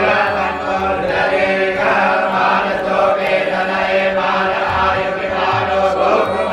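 A group of young Vedic students chanting Sanskrit mantras together in unison, a continuous recitation of many voices.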